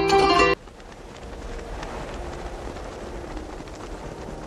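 Plucked-string intro music that cuts off suddenly about half a second in, giving way to a steady low hiss of shop-floor ambience with a few faint held tones.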